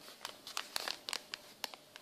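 Plastic anti-static bags crinkling as they are picked up and handled, a run of light, irregular crackles.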